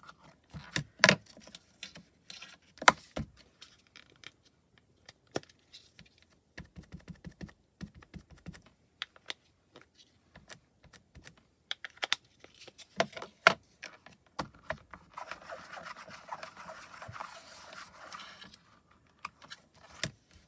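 Hard plastic clicks and taps from stamping with a MISTI stamping tool: an ink pad case dabbed against a clear stamp and the tool's hinged plate clacking down and up. Three clacks stand out, about a second in, about three seconds in and a little after halfway, with a few seconds of softer scuffing about three quarters of the way through.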